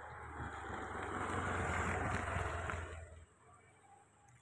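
A vehicle passing by: a rushing noise with a low rumble that swells to a peak about two seconds in and fades out about a second later.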